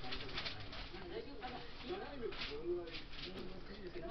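Muffled talk-show speech playing from a television's speaker, with dull low voice sounds and pauses.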